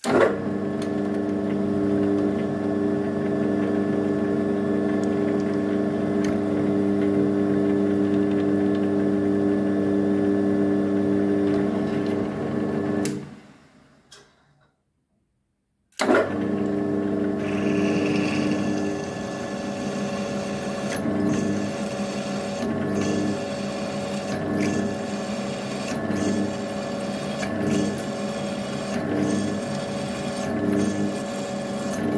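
Mill-drill motor and spindle running with a steady hum, winding down about thirteen seconds in. After a short silence it starts again, and a drill bit cuts into the clamped metal bar with irregular clicks and scraping over the hum.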